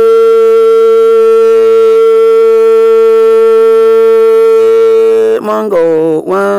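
A long, steady note sung in Hmong kwv txhiaj style, held for several seconds before the voice wavers and slides in pitch near the end.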